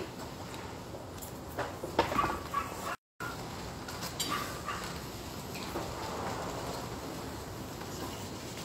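A dog making a few short, faint whines over steady background noise.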